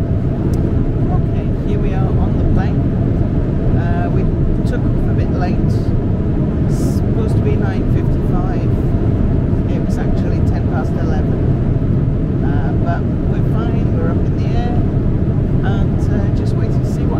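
Airliner cabin noise: a loud, steady low rumble, with faint chatter of other passengers over it.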